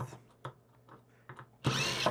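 A few light handling clicks, then a cordless drill runs briefly near the end.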